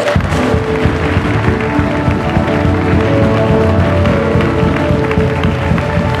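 A congregation clapping and applauding over steady background music with long held chords.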